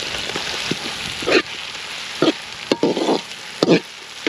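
Sliced tomatoes and green chillies sizzling as they go into hot ghee and browned onions in an aluminium karahi. Then a slotted metal spoon stirs them, scraping against the pan several times.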